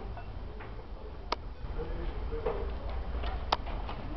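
Two sharp clicks about two seconds apart, with fainter knocks between them, over a steady low rumble.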